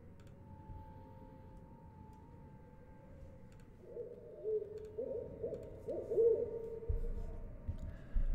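Owl hooting in an atmospheric night ambience, a run of wavering hoots starting about halfway through, over faint background sound with a few light clicks.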